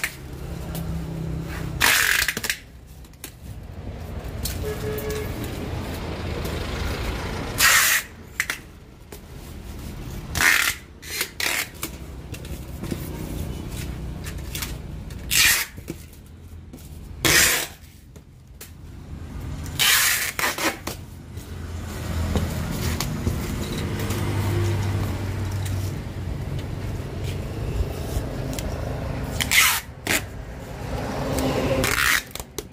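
Packing tape being pulled off the roll in short, loud screeching rips, about eight times, as a parcel is taped shut. A low steady rumble runs underneath.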